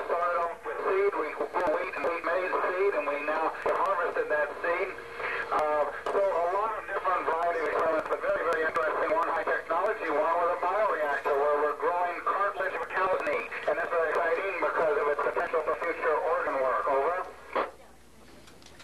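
An astronaut's voice coming down from the Mir space station over an amateur radio link, heard through the station radio's loudspeaker. The speech is thin and narrow-band and runs without a pause, cutting off near the end.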